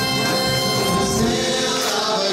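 Live big band music with a held chord, and singing coming in about a second in.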